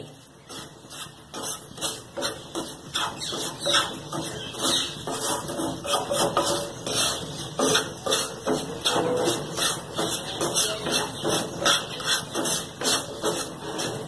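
A wooden spatula scraping and stirring dry semolina around a non-stick wok, a steady run of short scrapes a few times a second. The semolina is being dry-fried in a little oil over a low flame.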